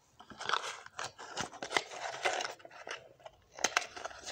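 Packaging on a makeup box being handled and unwrapped: crinkling and rustling broken by irregular sharp clicks and crackles, with a brief lull a little after three seconds followed by a few sharper clicks.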